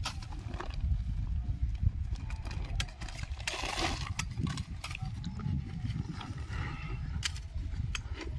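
Irregular sharp knocks of a blade chopping sugarcane stalks into planting pieces, over a steady low rumble. About three and a half seconds in comes a short rustle of a plastic sack being opened.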